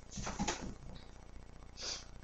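A quiet pause with faint movement sounds early on and one short, sharp intake of breath near the end.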